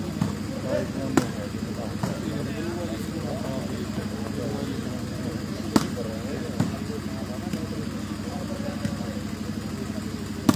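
Volleyball being struck by hand during a rally: four sharp slaps, the loudest about six seconds in, over the voices of onlookers and a steady low hum.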